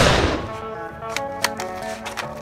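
A sudden loud blast of spray from a hand-held canister right at the start, fading away over about half a second, over background music. A few sharp ticks follow near the end.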